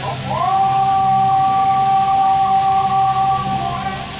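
Sound effect or music from a light-and-sound show's sound system: a long tone on two pitches at once that slides up about a quarter second in, then holds steady for about three seconds and fades near the end, over a steady low hum.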